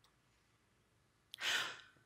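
Near silence, then a man's small mouth click and a quick in-breath about a second and a half in.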